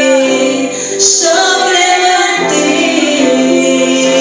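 A woman singing a worship song through a microphone and PA, over sustained musical accompaniment.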